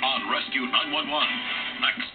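Television promo soundtrack: dramatic music with voices over it, dull and narrow-sounding from an old, worn videotape recording.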